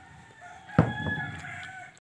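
A thump about a second in, then a rooster crows once, a pitched call lasting about a second.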